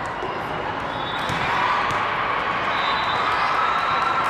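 Steady, echoing hubbub of a large hall with many indoor volleyball games going on at once: many voices mixed with the thuds of volleyballs being hit and bouncing on the courts.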